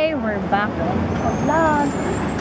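Road traffic on a busy street: a steady low rumble of car engines.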